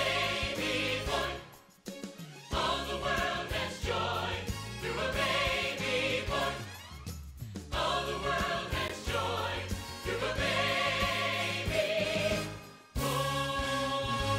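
Choir singing a Christmas song over instrumental accompaniment, in phrases broken by short pauses. Near the end the music moves into a new passage.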